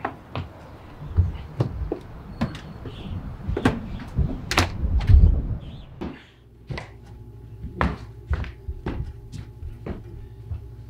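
Footsteps, shuffling and knocks as two people half-carry a limp man through a doorway and across a room, with heavy thumps in the first half. After about six seconds the background drops to a faint steady room hum while the steps and knocks go on.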